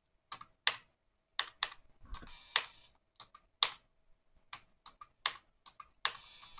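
Keystrokes on a computer keyboard: irregular, separate key clicks with short gaps, as a router console command is typed and entered.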